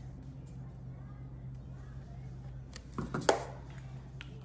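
Soft splashing of a carbonated drink being poured from a paper cup into a plastic light-bulb-shaped cup, over a low steady hum. About three seconds in come a couple of short knocks as the paper cup is set down on the stone counter.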